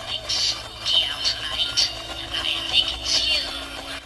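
Talking witch animatronic speaking through its small built-in speaker after its try-me button is pressed. The voice is not very loud and hard to make out, thin and high-pitched over a steady low hum.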